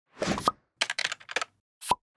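Sound effects of an animated logo intro: a short burst, then a quick run of about seven clicks, then a sharp pop with a brief tone near the end.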